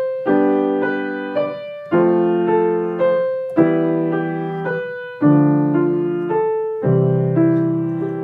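Piano playing a slow 3/4 exercise: a block chord struck at the start of each bar, about every one and a half seconds, under single right-hand notes stepping upward three to a bar. It is played without the sustain pedal, so each bar's notes stop before the next chord.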